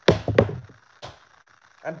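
Two sharp knocks about half a second apart, then a fainter one about a second in.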